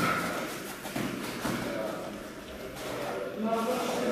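Faint voices in the room with light shuffling of feet on training mats during kickboxing sparring.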